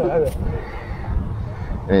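A man's drawn-out, wavering exclamation trailing off in the first moment, then a low rumble with no voice until he starts speaking again at the very end.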